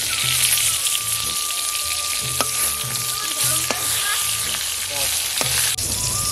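Pumpkin slices frying in hot oil in a metal kadai, a steady sizzle. A metal spatula clicks against the pan about three times as the slices are turned.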